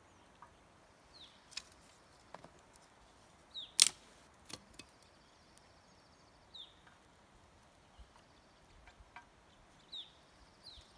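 Dry sticks snapping as they are broken by hand for rocket-stove fuel, a few sharp cracks with the loudest about four seconds in. A bird gives short downward-sliding chirps several times, with a buzzy trill near the middle.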